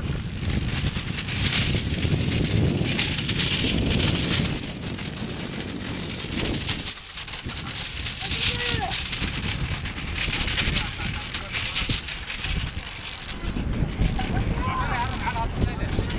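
A pair of Khillari bulls running with a light two-wheeled racing cart over a rough dirt track: the cart's wheels and frame rattle steadily. Voices call out now and then, about eight seconds in and again near the end.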